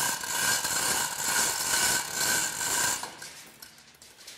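Manual chain hoist being hauled by hand, its chain rattling through the block as it raises a specimen tank lid; the rattling stops about three seconds in.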